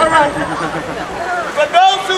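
A man's voice shouting and calling out over street traffic, with a loud, high-pitched held call near the end.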